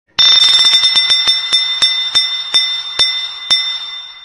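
A bell-like ringing sound effect: a bright bell struck rapidly, the strikes slowing to about two a second as the ringing fades.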